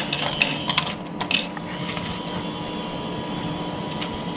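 Coins clinking as they are dropped by hand into a bank ATM's coin tray, over the steady hum of the machine running; a high steady tone from the machine joins about two seconds in.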